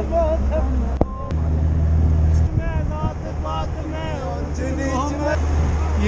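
Van engine and running noise droning steadily, heard from the roof of the moving van, with passengers' voices coming and going over it.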